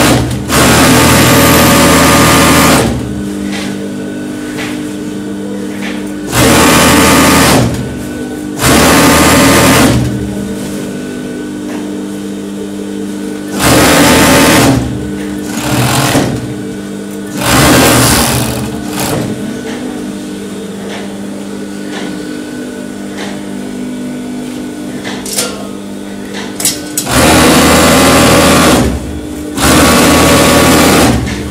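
Four-thread industrial overlock machine (serger) stitching the edge of dress fabric. It runs in about seven short bursts of one to two and a half seconds, with a steady, quieter hum between the runs.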